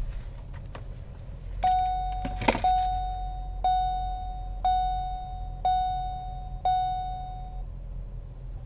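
A 2015 Ford Escape's dashboard warning chime dings six times, about once a second, each ding fading away. A sharp thunk comes about two and a half seconds in. Under it all is the low steady hum of the 2.0L EcoBoost engine idling on remote start.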